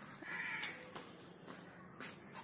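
A bird gives one harsh call about a quarter of a second in, lasting about half a second, with a few faint footstep taps on a tiled floor.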